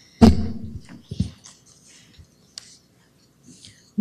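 Two short, sudden sounds close to a microphone, the first and louder just after the start and dying away over about half a second, the second about a second later. Faint clicks and rustling follow.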